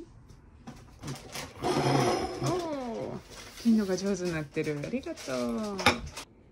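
Voices exclaiming in long, sing-song tones that glide up and down, without clear words, after a few light clicks of a knife against a plate.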